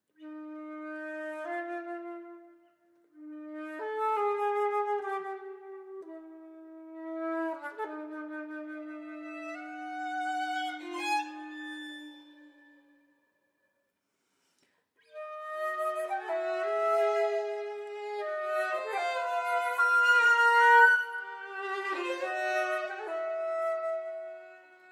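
Flute and violin duo playing: for about the first half a single instrument plays slow held notes alone, then after a pause of about two seconds both instruments play together in overlapping lines.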